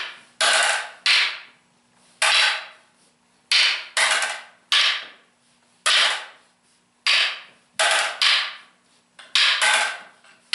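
Hand-held fighting sticks clacking against each other in a double-stick partner drill: about a dozen sharp cracks at an uneven pace, often two in quick succession, each fading out over a moment.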